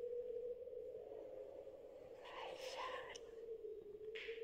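A faint steady hum on one pitch, with a brief soft, whispered voice a little over two seconds in.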